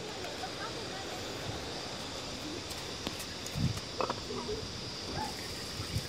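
Steady high insect chirring over quiet outdoor background, with faint distant voices briefly about halfway through.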